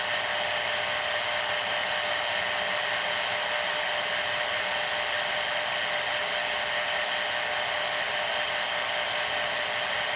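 Handheld 40-channel CB radio receiver putting out steady static hiss through its small speaker, with a faint steady hum tone under it, once the transmission has ended.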